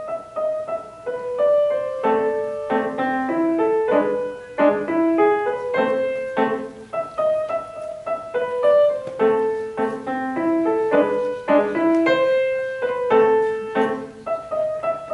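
Solo grand piano played live, a steady run of struck notes and chords mostly in the middle register.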